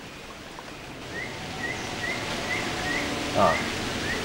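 Outdoor ambience: a steady wash of noise with a bird's short rising chirp repeated about twice a second from about a second in, and a brief spoken "ah" near the end.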